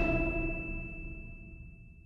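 The last chord of a Christmas song ringing out and dying away, with one high tone lasting longest.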